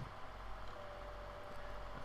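Room tone: a faint, steady background hiss with a low hum.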